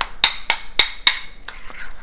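A metal spoon clinking against a bowl while stirring water into thick hot cereal, about four ringing taps a second, fading after the first second.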